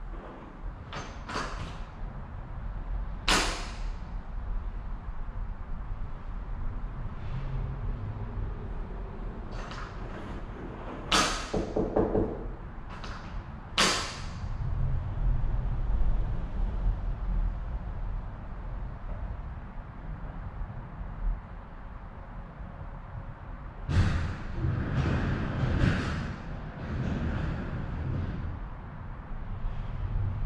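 Door lock hardware being worked by hand: scattered sharp metallic clicks and knocks, with a busier run of clatter near the end.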